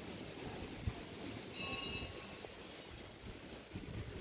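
Faint outdoor ambient noise with a brief, high, ringing tone about one and a half seconds in.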